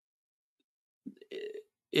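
Dead silence for about a second, then a short, low, rough vocal noise from a man's throat lasting about half a second.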